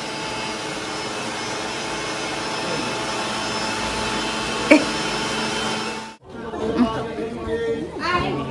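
A steady machine-like whirring hum with a few fixed tones in it and one short knock partway through; it cuts off abruptly about six seconds in, leaving faint voices.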